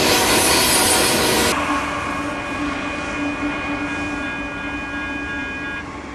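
Freight train boxcars rolling past close by. About a second and a half in, the sound changes abruptly to a steady tone of several pitches over fainter train noise, and the tone stops just before the end.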